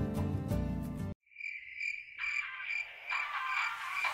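Background music cuts off abruptly about a second in. A high, steady, pulsing chirp like crickets follows, and new music rises under it about two seconds in.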